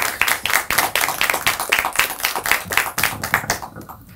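Audience applauding, a dense run of hand claps that thins out near the end.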